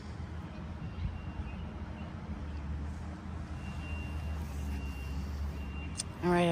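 A steady low rumble like a distant vehicle engine running, with a faint high, thin beep-like tone that sounds on and off a few times.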